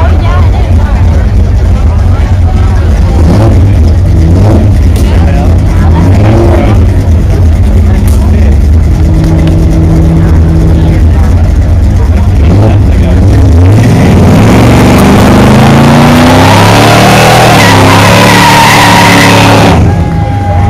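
Drag cars' engines idling with a steady low rumble, then about 14 seconds in the Chevrolet Chevelle launches: the engine revs up, rising in pitch, over a loud hiss of spinning tyres as it accelerates away.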